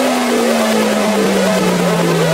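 Psytrance track played in reverse: one synth tone falls slowly in pitch under a repeating figure of short gliding synth notes, about three a second, over a wash of noise.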